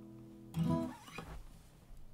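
The final chord of an acoustic guitar fading as it rings out, then a short, louder burst of handling noise about half a second in as the strings are stopped and the guitar moved.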